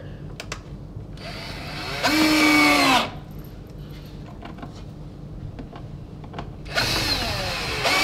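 Cordless drill-driver driving screws into a timber pad, in two runs of about two seconds each, a few seconds apart. The motor whine sags in pitch under load as each screw goes in.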